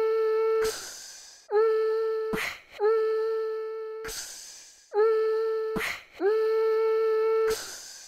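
Intro sound design: a held, hum-like pitched tone that slides up into its note at each start and breaks off into a short whoosh, repeating in pairs about five times.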